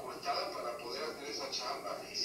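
A man's voice from an audio recording being played back through a speaker into the room, talking continuously.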